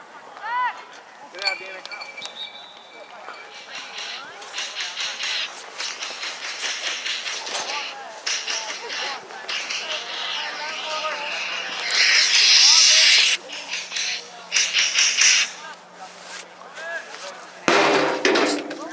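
Close rustling and crackling handling noise next to the microphone in uneven bursts, loudest for about a second roughly two-thirds of the way through, over faint voices from the field.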